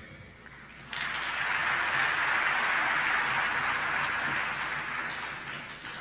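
Audience applauding, starting abruptly about a second in as the session closes and fading out near the end.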